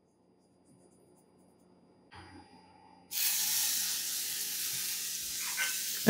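A ground beef burger patty sizzling in a hot cast iron skillet: after near silence, the sizzle starts suddenly about three seconds in as the meat meets the pan, then holds steady.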